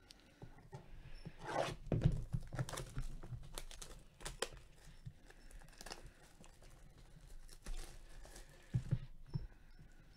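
Gloved hands handling a small cardboard trading-card box and the card inside: irregular rustling, scraping and crinkling. The loudest rustle comes about two seconds in, with another near the end.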